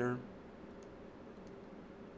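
A few faint computer mouse clicks, two in quick succession just under a second in and one more about half a second later, over a low steady hum.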